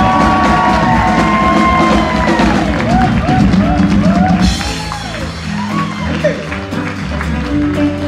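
Live band music with a drum kit: a long held pitched note over the band for the first two and a half seconds, then a run of short bending notes, and a cymbal wash coming in about four and a half seconds in as the music eases a little.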